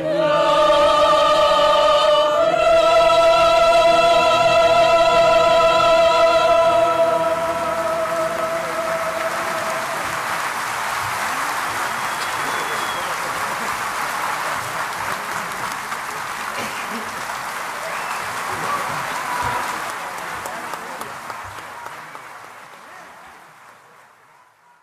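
The song ends on a long held sung note with vibrato over the band, lasting about ten seconds, while audience applause rises beneath it; the applause carries on alone and fades out near the end.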